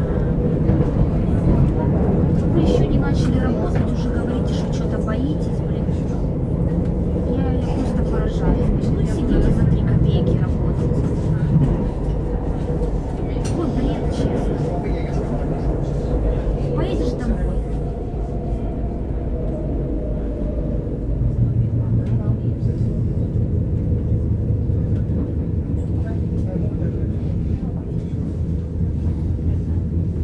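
Interior of a commuter train car in motion: a continuous rumble and running hum from the train, with passengers' voices over it in the first part. The low hum changes pitch about two-thirds of the way through.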